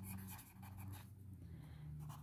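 Marker pen writing on paper: faint, quick scratchy strokes as a word is written by hand, over a steady low hum.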